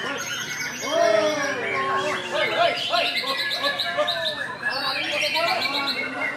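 Caged songbirds singing at once in a dense chorus of whistles, trills and rapid repeated notes, a white-rumped shama (murai batu) among them, with people's voices underneath.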